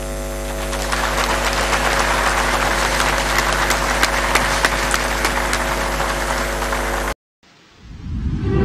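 Audience in a conference hall applauding, swelling about a second in, over a steady electrical mains hum. It cuts off abruptly shortly before the end.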